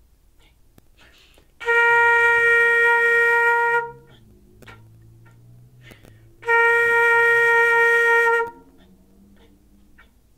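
Concert flute playing two long, steady B-flat notes, each held about two seconds, with a rest of about three seconds between them: whole notes and whole rests from a beginner exercise.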